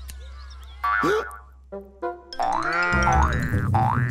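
Cartoon sound effects: a short effect about a second in, then springy boing sounds whose pitch rises and falls in arches during the second half.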